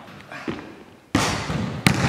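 Basketball hits echoing in a large gymnasium: a soft knock about half a second in, then a loud hit about a second in that rings on in the hall, and a sharp smack near the end.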